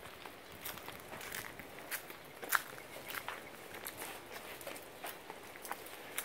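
Footsteps on paving strewn with fallen leaves, a soft irregular run of light scuffs and clicks, with one sharper tap about two and a half seconds in.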